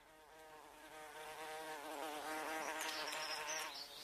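Buzzing-bee sound effect on the soundtrack, fading in and then holding, its pitch wavering up and down.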